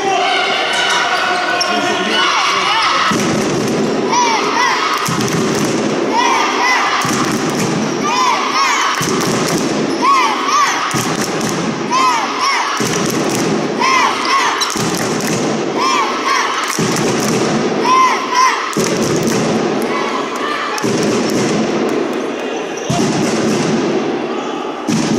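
Futsal being played on a wooden sports-hall floor: shoes squeak in short chirps every second or so, the ball thuds off feet and the floor, and voices echo through the hall.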